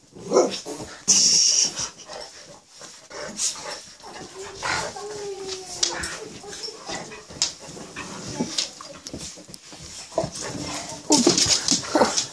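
Pets play-fighting on a bed: dog vocalising in short bursts amid scuffling and rustling of the bedding, with a brief hissing burst about a second in.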